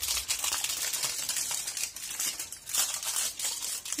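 Aluminium foil crinkling and crackling as it is folded and wrapped around a fingertip, with a short lull just past the middle.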